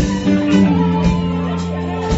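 Live rock band playing an instrumental passage: electric guitar holding sustained notes over drums, with a few drum hits cutting through.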